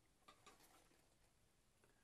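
Near silence with a few faint, short clicks from a stack of gilded china plates being picked up and handled.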